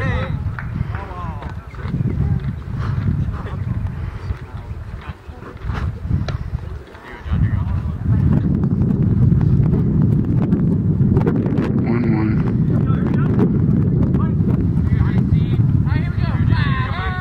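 Scattered voices of players and onlookers calling out and chatting at a baseball field. Wind rumbles on the microphone, heaviest in the second half.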